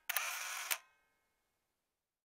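Camera shutter sound effect: a short burst of mechanical noise, about two-thirds of a second long, ending in a sharp click.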